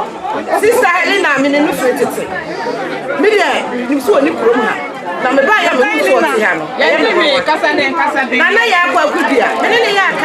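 Speech: a woman talking into a handheld microphone, with other voices chattering over her.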